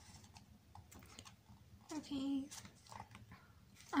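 Soft paper rustles and light taps of a photo book's pages being turned and handled, with a brief vocal sound of about half a second about halfway through.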